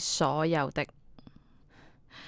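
Speech: a woman's voice finishing a short phrase, then a brief pause with a few faint mouth clicks.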